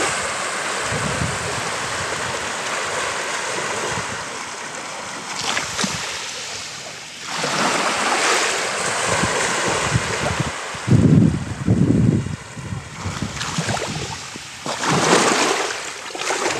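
Small Black Sea waves breaking and washing up on a sandy shore, the surf hiss swelling and fading every few seconds. Wind buffets the microphone in short, low rumbles about eleven to twelve seconds in, the loudest moments.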